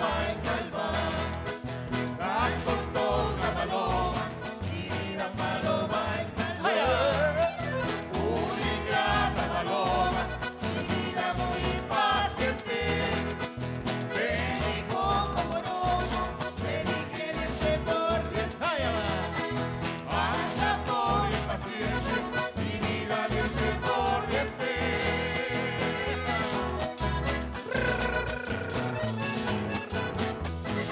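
Live Chilean cueca music: strummed acoustic guitars and accordion with a group singing, over a steady beat.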